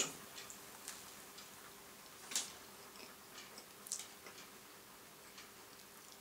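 A man chewing a mouthful of homity pie, a soft potato-and-cheese filling in pastry: faint, scattered mouth clicks at irregular intervals, the sharpest about two and a half seconds in.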